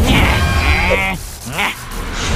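A cartoon character's wordless, quavering vocal cry, wavering up and down like a bleat for about a second, followed by a short rising squeak.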